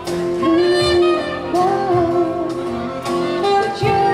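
Live acoustic band playing a slow ballad: a saxophone carries a sliding, held melody over strummed acoustic guitar and soft cajon beats.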